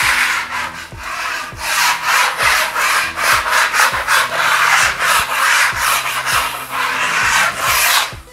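Steel putty knife scraped lightly over a painted wall in quick, repeated rasping strokes, knocking off small lumps of dried paint.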